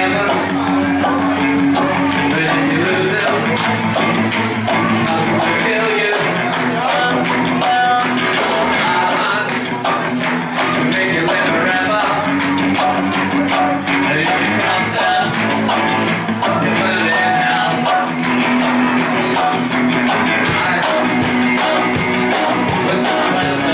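Live rock band playing through amplifiers: electric guitars and a male lead vocal over a steady beat.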